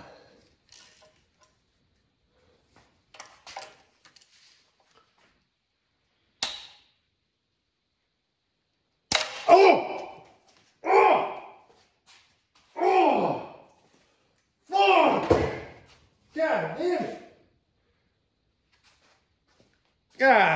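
A Snap-on ball-end hex bit being turned on a cylinder head bolt: a few faint tool clicks, then a sharp crack as the bit snaps. A man then lets out five drawn-out groans of pain, having hurt his hand.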